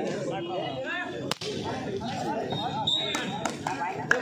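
Crowd chatter and men's voices at an outdoor volleyball match, broken by a few sharp slaps of a volleyball being struck, most of them in the second half.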